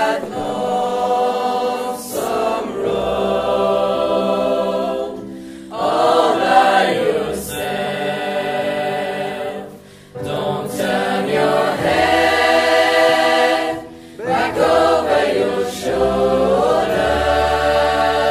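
Mixed-voice high-school choir singing in sustained harmony, in phrases of a few seconds separated by brief breaths. The hall's acoustics are dry.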